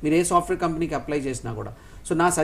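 Only speech: a man talking steadily, with a brief pause near the end.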